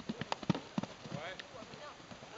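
Hoofbeats of a pony cantering on a sand arena, a quick run of thuds in the first second, with a voice heard briefly after them.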